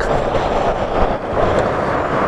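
2000 Corvette's 5.7-litre LS1 V8, fitted with an SLP exhaust, idling steadily with the hood open.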